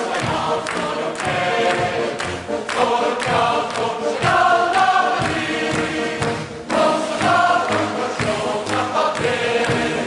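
Male military choir of uniformed soldiers singing together, with band accompaniment and repeated drum hits.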